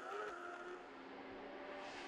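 Superstock road-racing motorcycle's engine heard from an onboard camera on the bike, running at high revs with a steady, held note that dips slightly about half a second in.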